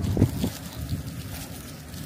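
Wind buffeting the microphone outdoors: an uneven low rumble with a couple of stronger gusts in the first half second.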